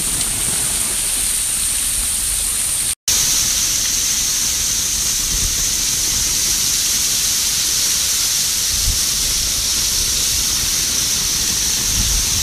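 Steady rush of Staubbach Falls' water and heavy spray falling on an umbrella held behind the fall. A brief silent break comes about three seconds in, then the same rush continues.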